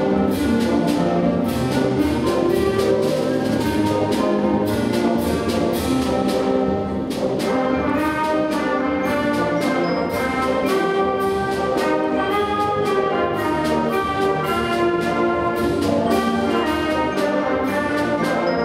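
A middle school symphonic band playing a march, brass to the fore over sustained ensemble chords, with regular percussion strokes.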